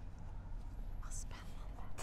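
Quiet outdoor background with a steady low rumble. About a second in comes a short, faint, breathy whisper from a person.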